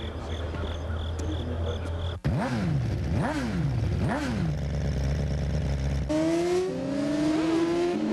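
Suzuki GSX-R racing motorcycle engines. A low steady drone gives way, about two seconds in, to the throttle blipped three times, the revs rising and falling sharply each time. From about six seconds, the bikes accelerate with rising engine notes.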